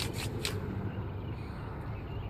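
A couple of faint clicks in the first half-second, over a quiet, steady low rumble of outdoor background noise.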